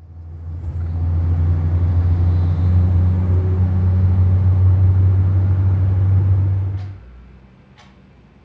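Steady low rumble of an Opel passenger van's engine and road noise, heard from inside the cabin. It fades in over the first second and cuts off abruptly about seven seconds in.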